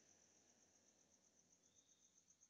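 Near silence, with only a very faint, steady, high-pitched pulsing tone.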